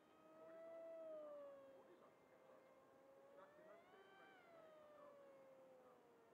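Faint whine of a small RC delta wing's electric motor and 6x4 propeller in flight. The pitch slides down, rises to a peak about four seconds in, then falls again.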